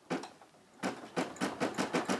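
Brother SE600 embroidery machine starting to stitch the design's border, a short click about a second before its needle settles into an even clicking of about four to five stitches a second.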